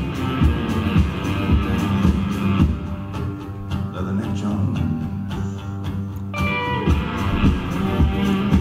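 Live band music in an instrumental passage, led by a strummed acoustic guitar over a steady rhythm. A higher melodic line comes in about six seconds in.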